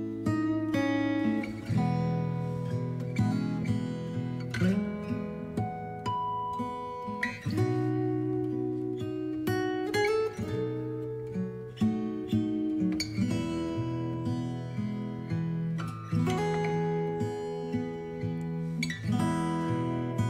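Background music on acoustic guitar: plucked and strummed chords that change every second or two.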